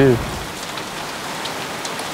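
Steady hiss of light rain, with a few faint drop ticks.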